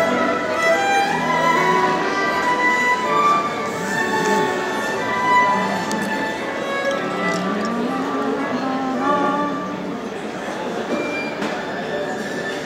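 Violins playing live, a melody of held bowed notes with a rising slide in a lower part about two-thirds of the way in.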